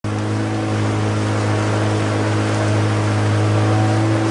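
Outboard motor of a boat running at a steady, even pitch, with a constant hiss of wind and water over it.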